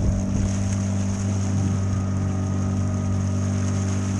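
Small outboard motor on an inflatable boat running at a steady cruising speed, its note holding one even pitch throughout.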